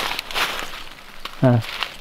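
Dry fallen leaves crunching and rustling underfoot. The sound is strongest in the first half second, then fades to a faint rustle.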